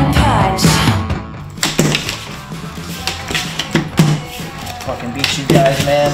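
Rock music soundtrack that drops away about a second in, followed by quieter indistinct voices and a few sharp knocks.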